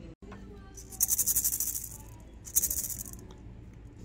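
A maraca with an orange painted head and a wooden handle is shaken in two bursts, the beads inside rattling quickly. The first shake lasts about a second, and a shorter one comes about a second and a half in.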